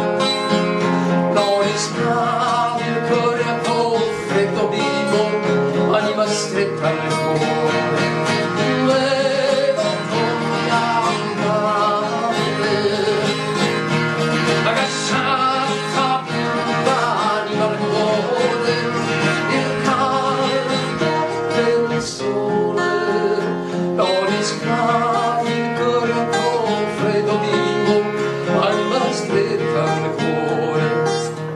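A song played on an acoustic guitar, with a voice singing over it.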